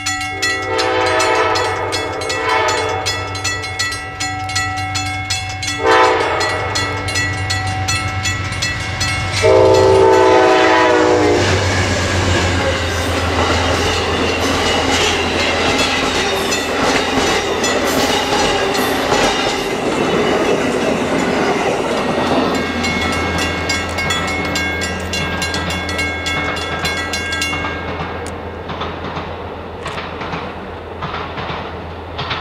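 Amtrak Coast Starlight passenger train's diesel locomotive sounding its multi-note horn in three blasts, the third short and loudest, as it approaches. Then the train passes close by, its wheels clattering over the rail joints over the engine's steady rumble, fading near the end as the cars go by.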